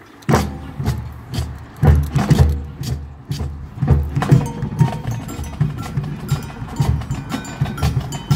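A high school marching band comes in suddenly and loudly after a quiet pause, with a dense run of drum and percussion hits, heavy low bass-drum strikes and, from about halfway, ringing mallet-keyboard notes.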